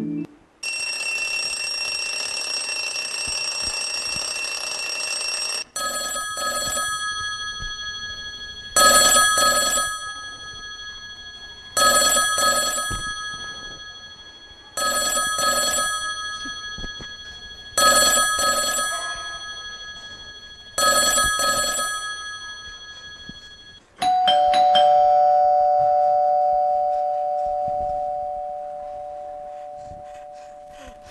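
Bell sound effects: a bell rings steadily for about five seconds, then a chime strikes six times about three seconds apart, each strike dying away. Near the end comes a two-note ding-dong chime, the loudest and longest of them, which fades slowly.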